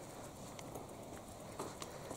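Faint sound of a bicycle rolling over a sandy dirt track, with a few light clicks and rattles scattered through it.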